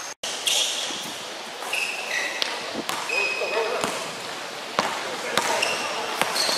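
A basketball being dribbled on a gym's hardwood floor during a game, with scattered bounces and sneakers squeaking on the court, in an echoing hall with voices in the background.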